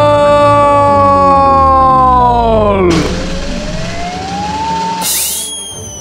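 A boy's long, drawn-out yell of "Fuuutbooool!", held for nearly three seconds and dropping in pitch as it dies away. Then come comic sound effects: a slowly rising whistle-like tone, and a short hiss with falling whistle tones.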